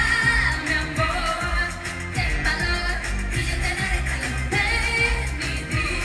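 Live pop music: a female singer's voice over a band or backing track with a steady, driving beat.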